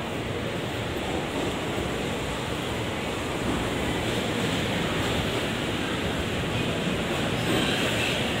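Electric commuter train rolling into the platform, a steady rush of wheel-on-rail and running noise that grows a little louder toward the end.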